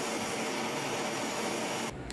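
Hand-held gas blowtorch flame hissing steadily as it heats a copper tube joint on a copper tumbler for brazing. The hiss stops abruptly near the end.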